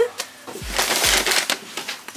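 Packaging crinkling and rustling for about a second, a dense run of small crackles, with a couple of dull bumps.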